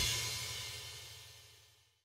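The last ring of an extreme metal band's final hit dying away, high ringing over a low sustained tone, fading to near silence about one and a half seconds in.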